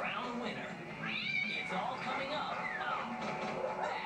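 Television show soundtrack played through the TV's speaker: music with an animal's high calls, one rising and falling about a second in and another falling call near three seconds.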